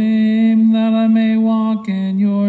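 Voices chanting a sung liturgical verse on a mostly level held pitch, with consonants breaking in and a step down near the end, with organ in the mix.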